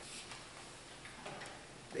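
Quiet room tone during a pause in a man's talk, with faint ticking and his voice starting again at the very end.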